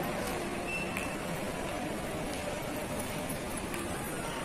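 Steady hubbub of a large indoor shopping mall: distant, indistinct voices with a few faint clicks.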